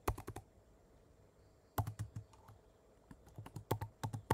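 Computer keyboard keystrokes: a quick burst of several clicks at the start, a single click near the middle, then a run of clicks near the end.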